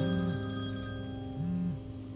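Mobile phone ringing with an incoming call, a short ringtone phrase repeating about every second and a half, over sustained background music.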